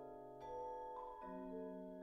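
Slow, spacious mallet-percussion music: vibraphone and marimba notes struck and left to ring, stacking into a sustained chord. New notes enter about half a second in and again just past a second, with some tones held while others change.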